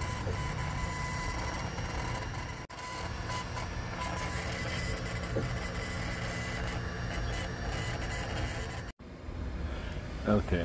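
Longer Ray5 10W diode laser engraver partway through an engraving job: a steady whir from the motors moving the laser head, with a thin steady whine over a low hum. The sound drops out briefly twice.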